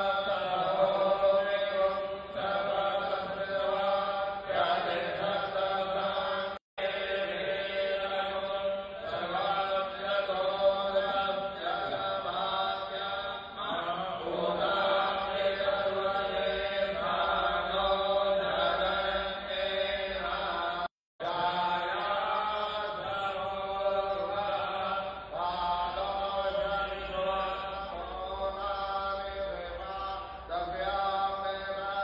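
A man's voice chanting Hindu puja mantras into a microphone in a steady, sustained recitation. It cuts out for an instant twice.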